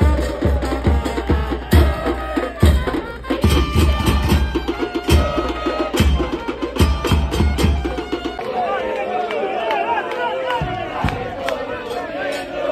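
Football supporters' bass drums pounding a steady beat under crowd singing in the stands. The drums stop about eight seconds in, leaving the crowd's chant.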